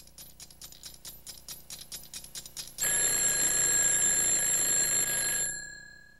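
A clock ticking fast and getting louder, then a mechanical alarm clock ringing loudly from about three seconds in until it stops shortly before the end.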